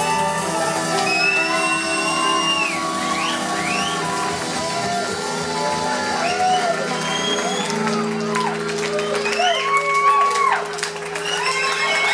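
Live band with guitars, banjo, drums and steel guitar playing the closing bars of a song, holding long ringing notes, while the crowd whoops and shouts over it. The music dips briefly near the end, then swells again.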